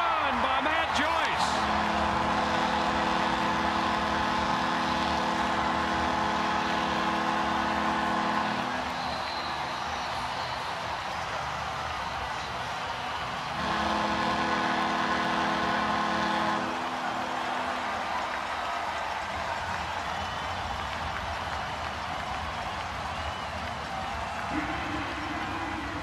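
Ballpark crowd cheering a game-winning walk-off home run. A steady, held pitched tone sounds over the cheering twice, first for about seven seconds and then for about three.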